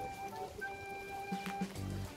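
Background music: a gentle melody of long held notes.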